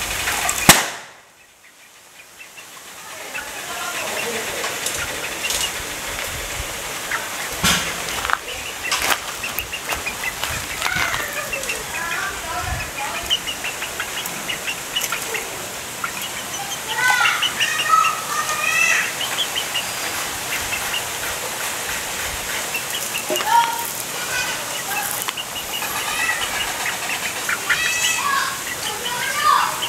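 Short chirping bird calls, typical of chickens, over a steady noisy background; a single sharp knock near the start is the loudest sound.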